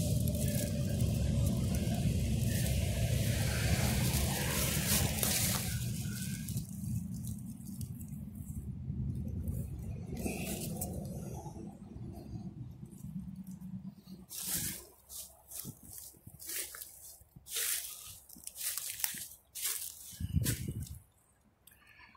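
Steady rumble of interstate traffic passing for the first six seconds or so, fading after that. Then a series of short rustles and crunches of footsteps and handling in ground-cover vines and dry leaves near the end.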